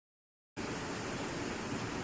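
Dead silence, then about half a second in a steady, even hiss starts abruptly and runs on. It is the background noise of a newly started voice-over recording.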